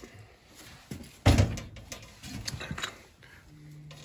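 Metal hand tools clanking and knocking against a boiler's gas valve and piping: one loud clank about a second in, then a few lighter knocks and scrapes.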